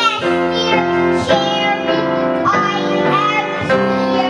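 A group of young children singing a song together, their notes held and changing every half second or so.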